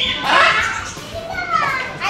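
Parrots screeching: a harsh, high shriek around half a second in, then a falling call near the end.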